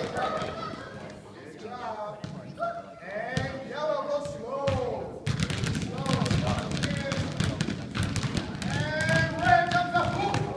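Many basketballs being dribbled at once by a group of small children on a gym floor: an irregular patter of bounces, sparse at first and thickening about halfway through.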